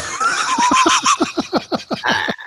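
Men laughing hard together: a fast run of short laugh pulses, about eight a second, with one high, wavering laugh above them.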